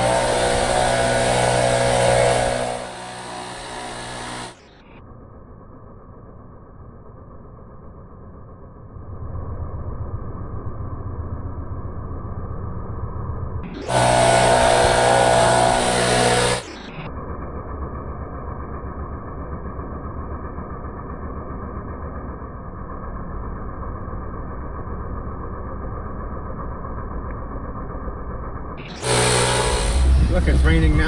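Handheld leaf blower running, loud and steady for the first few seconds and again for a few seconds around the middle. For the rest, the sound is muffled and dull, a low rumble with the high end cut off.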